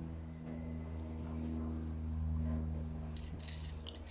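Steady low hum with a few faint clicks and scrapes of a small screwdriver turning a screw into a 3D-printed plastic part.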